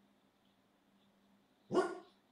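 A dog barking once, briefly, near the end.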